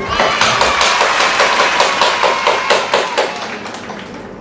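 Rapid hand clapping, about six claps a second, with a voice over it. The clapping starts about half a second in and dies away near the end.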